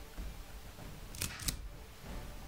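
A handgun being cocked: two quick sharp clicks, the second about a quarter second after the first, over low room tone.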